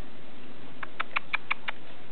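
An animal's quick run of about six short, squeaky chirps, about six a second, starting about a second in.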